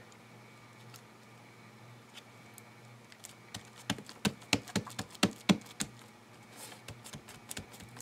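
Fingers pressing and tapping a glued paper piece down onto a book page on a cutting mat: a quick irregular run of light taps and clicks starting about three seconds in, with a soft paper rustle and a few fainter taps near the end, over a steady low hum.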